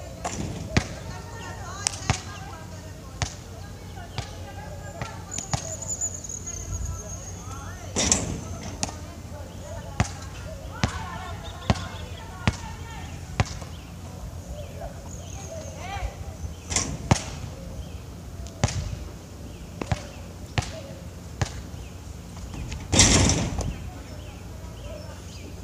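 A basketball being dribbled and shot on an outdoor court: irregular sharp bounces, sometimes in quick runs, with a louder, longer bang about eight seconds in and another near the end.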